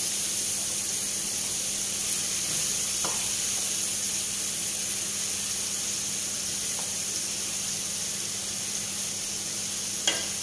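Tomatoes, onion and garlic frying in oil in a frying pan, a steady sizzle, while a wooden spatula stirs them, with a couple of faint knocks of the spatula on the pan about three and seven seconds in.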